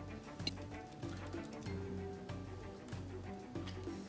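Soft background music with a steady, repeating bass line, and a few light clicks of a knife and fork against a ceramic plate.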